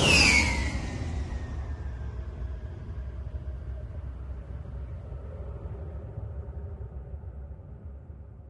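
Tail of a cinematic intro sound effect: a deep rumble fading slowly away, with a high tone falling in pitch just after the start.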